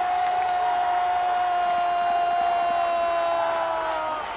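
A TV football commentator's long held shout, one unbroken cry that sags slightly in pitch, over crowd noise in the stadium. This is the drawn-out call that greets a goal as the ball goes into the net.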